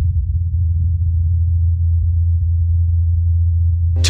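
Low, steady droning hum of NASA's Ingenuity Mars helicopter's rotor blades in flight, picked up by the Perseverance rover's SuperCam microphone about 80 m away through the thin Martian air. A faint tick sounds about a second in.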